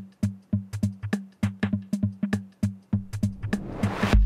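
Drum-machine beat playing fast, regular hits with a low pitched thud under them. Near the end a synthesized noise whoosh from a Reason Subtractor swells and rises in pitch as its automated filter frequency sweeps open.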